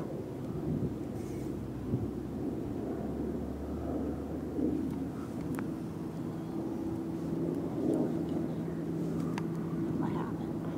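Distant engine noise from passing traffic: a low rumble, with a steady engine drone joining about halfway through.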